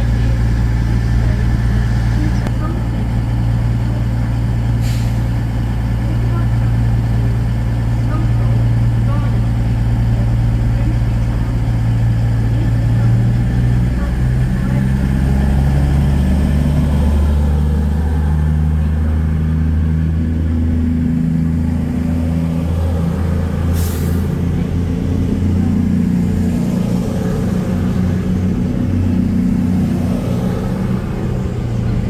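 Grand Central Class 221 Super Voyager diesel-electric unit pulling away from the platform. Its underfloor diesel engines run with a deep, steady note that steps up in pitch about halfway through and keeps rising as the train gathers speed. A short high hiss comes near the end.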